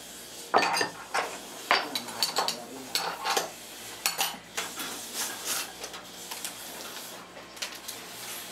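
Irregular metal clinks and clanks of tools and a metal hoop being handled and set on a cast-iron bench jig, some of them sharp with a short ring, thinning out towards the end.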